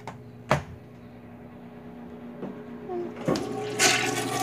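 Handling noise from a handheld phone being moved: a sharp knock about half a second in and a swell of rustling near the end, over a steady low hum.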